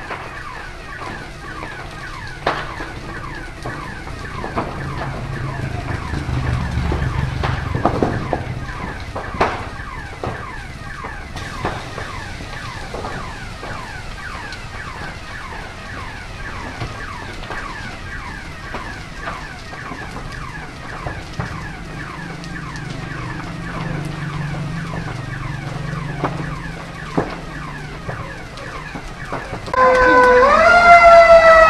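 An electronic alarm sounding a rapid, continuous chirping pattern beside a large building fire, with a few sharp cracks from the blaze in the first ten seconds and a low rumble that swells twice.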